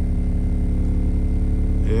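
Nemesis Audio NA-8T subwoofer playing a steady low test tone in free air, its cone moving with long excursion. It sounds clean, with very little mechanical noise from the driver.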